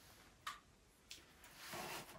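Near silence with faint handling noise: two soft clicks about half a second and a second in as a small metal lantern hanging on a post is adjusted by hand.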